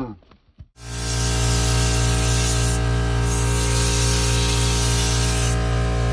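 Background music: a loud, steady held chord with a deep low end. It starts about a second in after a brief quiet.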